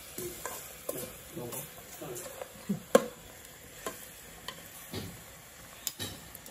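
A metal fork clinking and scraping against a stainless steel pot as fish steaks are turned in oily marinade: irregular light knocks, the loudest about three seconds in, over a faint sizzle of the fish frying.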